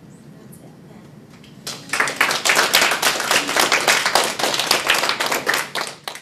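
Quiet room tone, then an audience breaks into applause about two seconds in, loud and dense.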